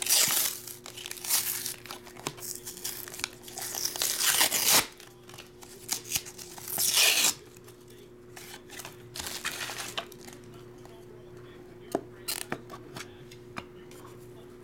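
Thin white cardboard box being torn open by hand in several ripping pulls, the loudest about four and seven seconds in. After that, a few light clicks and rustles as the clear acrylic card holder from inside is handled.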